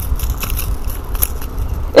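Low, steady rumble with scattered faint crackles and clicks, about a second in the clearest: wind and handling noise on a GoPro's microphone.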